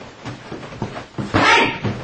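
A man's high-pitched kung-fu yell about one and a half seconds in, shaped like his repeated "Hey!" battle cries. A few light knocks come before it.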